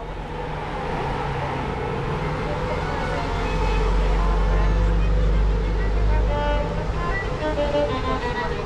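A large vehicle's engine running close by on the street, a steady low drone that builds over the first few seconds and drops away about six and a half seconds in.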